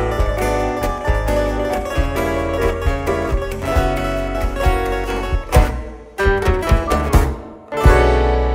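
Portuguese guitar playing a quick plucked melody over a band with a steady bass line. Near the end the tune breaks into a few sharp accented hits with short gaps, and the full band strikes the closing chord at the very end.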